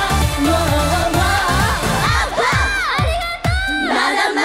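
Up-tempo J-pop idol song performed live, with a steady kick-drum beat, singing and a cheering crowd. About halfway through the drums thin out, leaving swooping high vocal or synth glides over the crowd.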